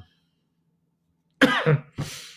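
A man's voice silent for over a second, then coughing or clearing his throat in a short burst near the end.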